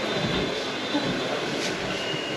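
Steady rushing background noise with a faint high steady tone, with no speech.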